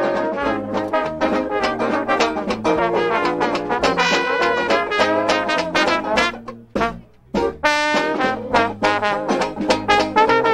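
Live brass band playing an upbeat tune, trumpet and trombone leading, with a brief break about seven seconds in before the playing picks up again.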